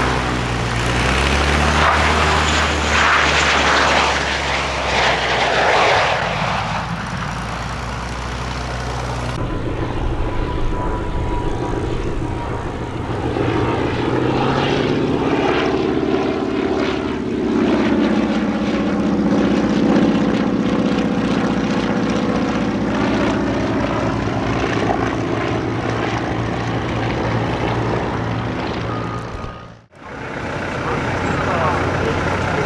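A light propeller plane's piston engine runs close by while a jet's roar swells and fades overhead during the first few seconds. After a cut, a vintage radial-engined high-wing monoplane flies past, its engine and propeller drone shifting in pitch as it goes by.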